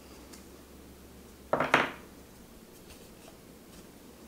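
Matte-laminated tarot cards being handled: a short, sharp rustling snap about a second and a half in as a card slides against the deck, with a few faint taps of the cards around it.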